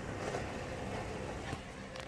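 Steady low background rumble, like distant traffic, with a short light knock about one and a half seconds in as the phone is handled.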